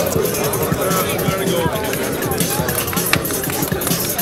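Dance music with a steady, fast beat, with the voices of a crowd mixed in over it.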